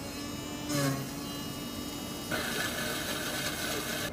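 Self-serve smoothie machine blending a cup of frozen fruit and vegetables: a steady motor hum with a whine, a brief rougher burst about a second in, then a louder, harsher churning from about two seconds in that cuts off sharply.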